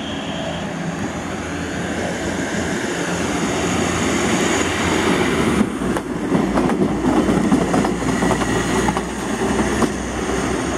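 SA109 diesel railbus pulling out and passing close by, its engine running and growing louder as it nears. From about six seconds in there is a quick run of clicks as its wheels pass over the rail joints, then the sound eases as it draws away.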